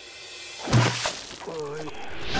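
A plastic bucket of soapy water drops onto a bear's head, making a sudden, loud clattering splash about three-quarters of a second in after a rising whoosh. Near the end comes a short, wavering, muffled vocal sound from under the bucket.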